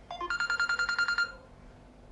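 Phone dialing beeps: a couple of short electronic tones, then a rapid train of pitched beeps, about a dozen a second, lasting about a second.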